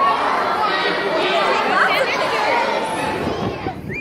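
Many children's voices chattering and calling over one another, echoing in a large gym hall. The chatter cuts off shortly before the end.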